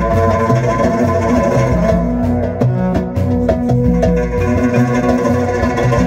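Instrumental passage of a Moroccan popular song played live: a bowed violin over a plucked guitar, with a repeating bass line underneath.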